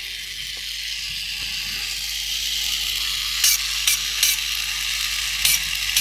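A 1984 Tomy Dingbot toy robot's small battery motor running its freshly greased plastic gear train: a steady whir, with a few sharp clicks in the second half.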